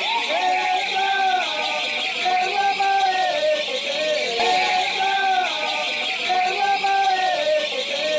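Rela song being sung: a repeating melody of long held notes that glide between pitches, over a steady rattling hiss.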